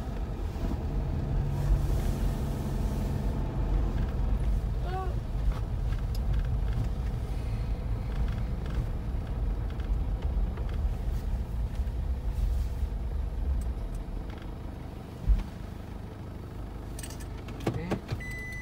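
Car engine and road noise heard from inside the cabin as the car drives: a steady low rumble that eases off about fourteen seconds in as the car slows. A single sharp thump comes about a second later.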